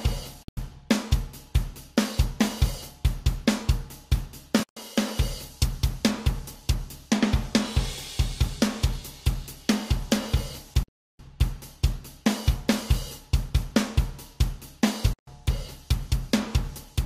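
A recorded acoustic drum kit playing a steady groove of kick, snare, hi-hat and cymbals, broken by a few brief dropouts. It is heard bypassed and then processed: multiband compression with upward compression on the high band lifts the quiet high-frequency room sound, giving a very lively room, and a gate cuts the quietest sounds.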